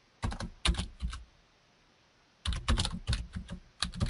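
Typing on a computer keyboard: a few keystrokes in the first second, a pause of over a second, then a quick run of keys.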